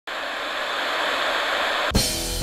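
Television static hiss, a steady even noise that swells slightly and cuts off sharply near the end as a rock song begins.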